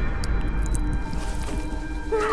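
Thunder rumbling low and slowly fading, under a sustained eerie music drone, with a few faint high ticks in the first second.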